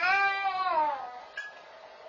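A single drawn-out cry that rises slightly and then falls in pitch over about a second, then fades out.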